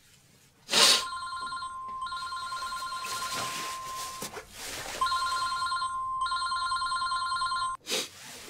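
Mobile phone ringing with a quickly trilling electronic ringtone: two rings of about three seconds each with a short gap between them, cut off suddenly near the end.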